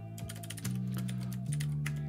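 Computer keyboard typing, a quick run of key clicks, over background music with sustained low notes.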